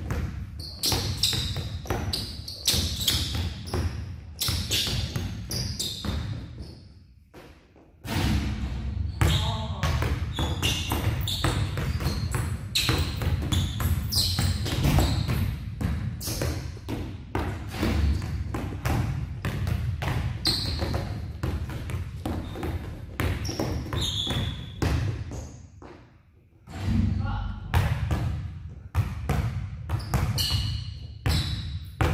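Basketballs dribbled fast and hard on a gym floor, a dense run of bounces with short high squeaks among them. The bouncing breaks off briefly about seven seconds in and again about 26 seconds in.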